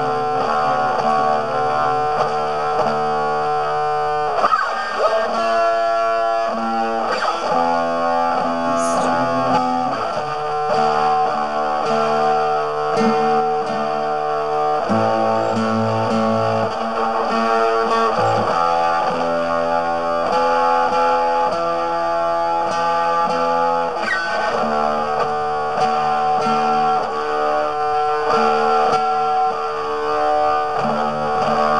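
Guitar music: held, ringing chords that change every second or two, with no singing.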